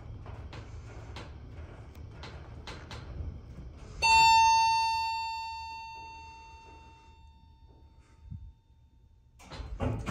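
Montgomery hydraulic elevator car descending with a steady low hum and faint clicks. About four seconds in, a single arrival chime strikes: one bell tone that rings and fades over several seconds.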